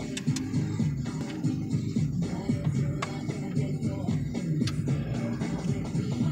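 Hip-hop music with heavy bass playing through a Dodge Durango's speakers from a newly wired aftermarket radio, the factory amplifier bypassed.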